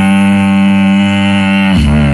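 Beatboxer holding one long, steady, buzzing bass note into a cupped microphone, which breaks near the end into lower notes.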